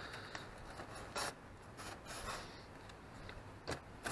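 Faint rubbing and rustling of a peeled fabric strip and foam board being handled by hand, with a few short scrapes about a second in, around two seconds, and near the end.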